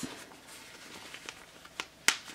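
Faint rustling of a cloth diaper shell being handled and folded, with a few small clicks near the end as its rise snaps are pressed together.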